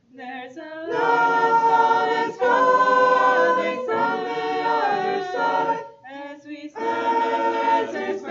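Small mixed choir of women and men singing a cappella, with no instruments. The singing breaks off briefly at the start and again about six seconds in, between phrases.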